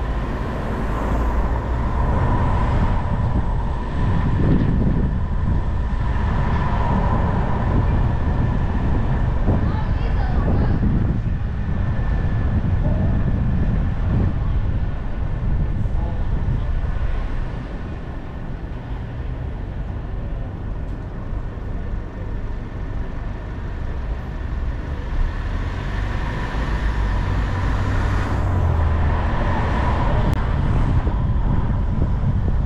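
Car driving through city streets: a steady, heavy low rumble of road and engine noise, easing somewhat about two-thirds of the way through.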